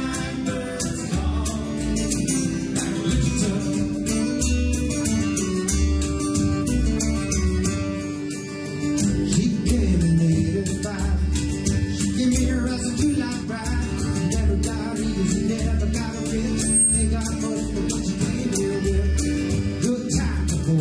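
Live folk band playing a song: acoustic guitar strumming and a bodhrán frame drum keeping a steady beat under a man's singing voice.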